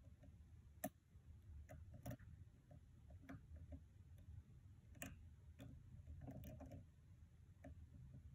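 Faint, irregular metallic clicks of a hook pick working the pins of a pin-tumbler lock held under tension, a click every second or so, the sharpest about a second in and about five seconds in.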